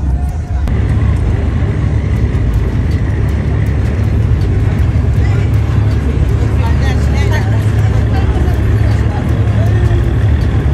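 A boat's engine running with a steady low hum, with people talking in the background.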